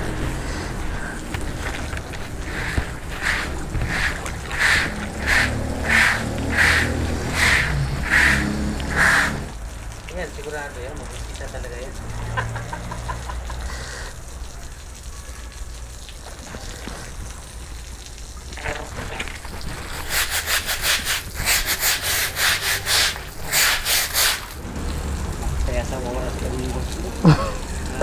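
Rhythmic scrubbing strokes on wet concrete, about one and a half a second at first, then a faster, louder run near the end, over a low steady hum.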